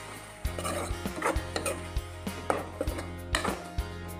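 Steel spatula stirring onions and masala paste in a steel kadai, knocking and scraping against the pan's metal in irregular strokes about twice a second, over steady background music.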